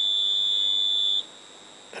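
Timing fixture's test buzzer sounding a steady high-pitched tone that cuts off suddenly just over a second in, as the distributor's contact points change state at the firing position being checked on the degree scale.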